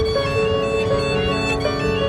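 A violin and a digital piano playing live together. The violin carries the melody in a run of short notes over the piano's accompaniment.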